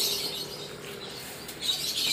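Birds chirping over faint outdoor background noise, the chirping louder near the end.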